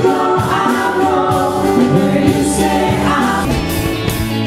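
A worship song sung by several voices together over a musical accompaniment.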